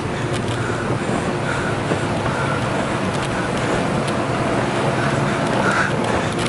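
Steady rushing hum of the electric air blower that keeps an inflatable obstacle course inflated, heard from inside it, with occasional light scuffs against the vinyl as someone climbs.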